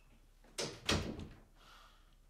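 A door thudding: a brief scrape about half a second in, then a single loud thud that dies away quickly.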